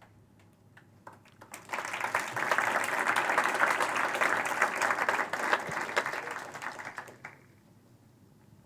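Audience applauding: a few scattered claps, building to full applause about two seconds in, then dying away shortly before the end.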